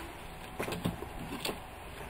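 A few faint clicks and light knocks of plastic action figures being handled on a tabletop.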